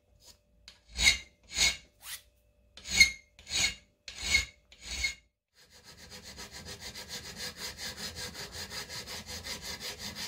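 Hand file rasping across an aluminium part held in a vice, taking off leftover cutting tabs. For the first five seconds it makes long strokes about every half second; after a short pause come rapid, quieter short strokes, about six a second.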